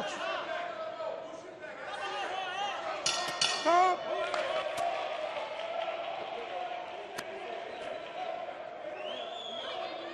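Boxing ring bell struck twice about three seconds in, ringing out to mark the end of the round, over arena crowd voices and shouts.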